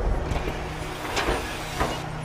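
Steady low rumble of a heavy seismic vibrator truck's engine, with two short hisses, about a second in and near the end.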